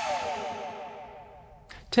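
The tail of a short intro jingle for a tech talk show: its last sound fades out over about a second and a half, sliding down in pitch as it dies away. A man's voice starts just at the end.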